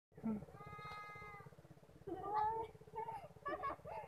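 Children's voices: one long held call about half a second in, then quick chatter from about two seconds in, over a low steady hum.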